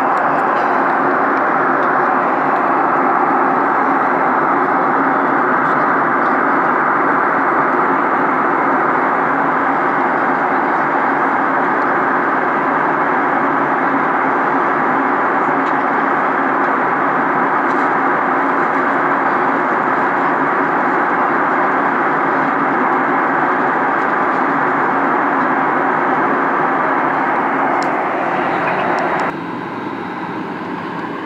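Steady cabin noise of an airliner in flight, an even, unbroken rush of engine and airflow, which drops abruptly in level about a second before the end.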